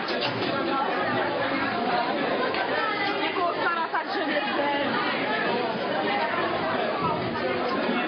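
Many people talking at once: steady crowd chatter with overlapping voices.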